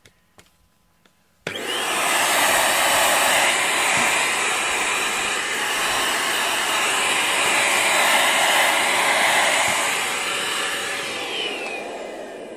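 Handheld vacuum cleaner switched on about a second and a half in, running with a steady motor whine and rushing suction as it picks up clumps of cat hair from a foam floor mat. Near the end it is switched off, its whine falling as the motor spins down.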